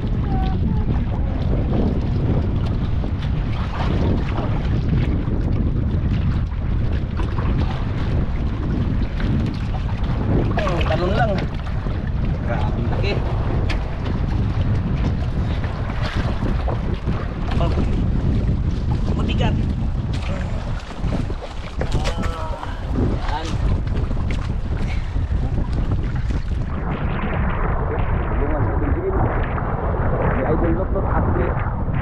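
Wind buffeting the microphone over shallow sea water, a steady low rumble, with people talking in the background.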